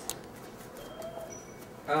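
A toddler's single short, soft coo about a second in, followed near the end by an adult's "um".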